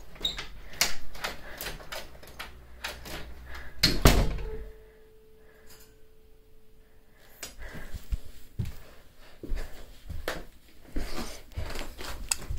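Door and handling knocks and clicks in a small room, with a louder thump about four seconds in. A few seconds of quiet with a faint steady tone follow, then more scattered knocks.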